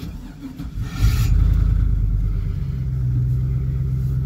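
2001 GMC Yukon's V8 cranked by the starter for about a second, then catching and starting right off with a sudden jump in level. It runs at a fast idle and settles into a steady idle about two and a half seconds in.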